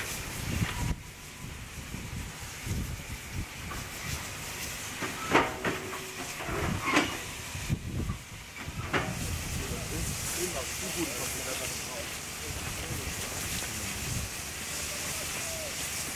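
A Deutsche Reichsbahn class 52.80 steam locomotive moving slowly, with a steady hiss of steam and a few sharp metallic clanks about five, seven and nine seconds in. The hiss grows stronger in the second half, and wind noise is on the microphone.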